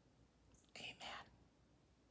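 A woman quietly saying "Amen" once, about a second in; otherwise near silence, room tone.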